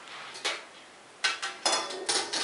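Metal spoon clinking against a ceramic mixing bowl of frosting: a light clink about half a second in, then two more with a short metallic ring in the last second.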